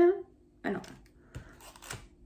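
A clear plastic food tray handled and set down on a table: a soft knock about halfway through, then a brief crinkle of plastic near the end. A faint steady hum lies underneath.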